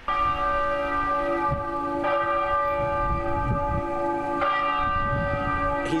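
A large bell tolling, struck three times about two seconds apart, each stroke ringing on into the next, over a low rumble.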